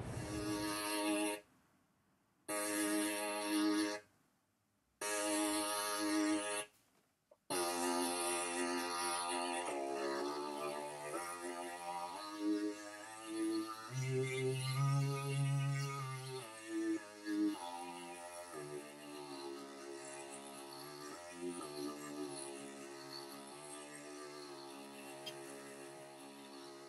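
Access Virus TI synthesizer playing a sustained tone whose pitch steps from note to note, the notes triggered by hand movements in front of a webcam used as a MIDI controller. It sounds in three short stretches broken by silences, then runs on without a break, the notes changing every fraction of a second to a second and growing quieter toward the end.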